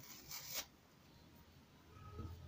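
A short rasping rustle, about half a second long, of polyester fiberfill stuffing being pulled apart and handled, followed by faint handling noise.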